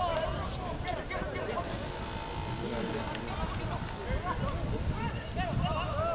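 Several voices of rugby players and sideline onlookers calling out at once, overlapping, with no single clear speaker.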